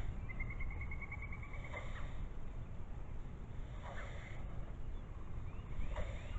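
Low wind rumble on the microphone, with a songbird's rapid, even trill of high notes near the start lasting about a second and a half.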